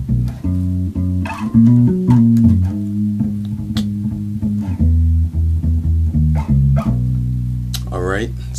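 Electric bass guitar played solo: a gospel lick in the key of B, single plucked notes and a slide building into chords, with notes left ringing together.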